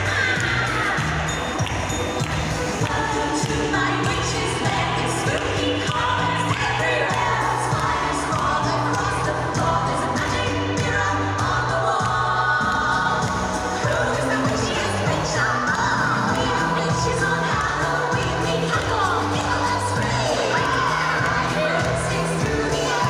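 Dance-routine music with sung vocals over a steady bass line, played over loudspeakers in a large sports hall.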